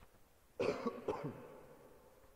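A person coughing, two quick coughs starting about half a second in.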